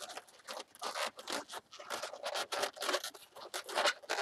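Inflated latex modelling balloons squeaking and rubbing against each other as they are squeezed and twisted by hand, in quick, irregular strokes.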